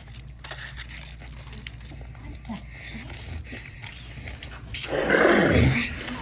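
A loud monster-like roar about five seconds in, sliding down in pitch and lasting about a second. Before it, faint rustling and handling of plush toys.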